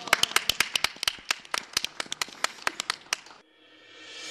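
A small studio audience applauding, with the separate claps distinct. The clapping cuts off abruptly about three and a half seconds in, and faint music begins to fade in.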